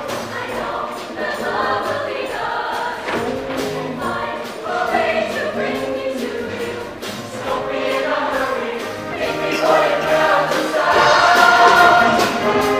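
Mixed show choir of male and female voices singing in harmony over instrumental accompaniment, swelling louder near the end.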